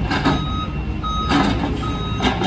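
Reversing alarm on a heavy work vehicle beeping steadily, about three beeps in two seconds, over the low rumble of idling engines.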